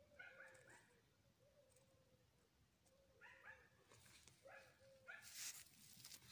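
Faint animal calls over near silence: short repeated notes in a few quick groups, near the start and again from about three seconds in. A brief rustle comes a little after five seconds.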